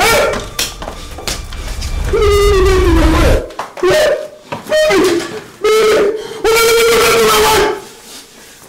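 A man wailing and crying in long, drawn-out, high-pitched cries, several in a row with short breaks, the longest cry near the end.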